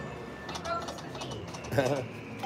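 Konami video slot machine spinning its reels, with short electronic beeps as the reels play out, over a steady casino background hum. About 1.8 s in there is a brief, louder warbling sound.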